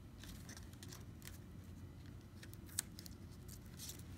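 Faint rustling and crackling of paper strips being folded over and pressed down by hand, with one small sharp click near three seconds in.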